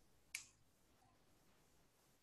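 Near silence broken by a single short, sharp click about a third of a second in.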